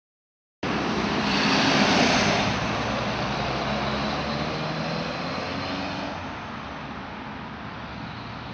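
A vehicle passing on the nearby road: its noise swells to its loudest about two seconds in, then slowly fades away.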